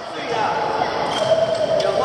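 Badminton play in a large, echoing gym hall: racket strikes on the shuttlecock and footfalls on the wooden court, with a sharp hit near the end, over background chatter of players' voices.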